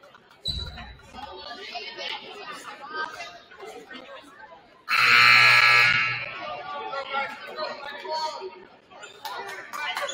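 Gymnasium scoreboard horn giving one loud buzz of just over a second, midway through, signalling the end of a timeout, over crowd chatter. A low thump comes about half a second in.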